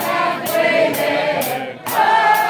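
Live rock music with several voices singing a held line together over a steady beat of sharp hits about twice a second. The sound dips briefly near the end, then comes back with a sharp hit.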